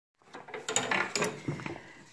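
Handling noise: a quick series of light knocks and clatters as a hand moves things on the wooden top of an upright piano.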